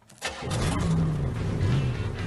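Car engine in the cartoon starting with a sudden burst about a quarter second in, then revving up and down.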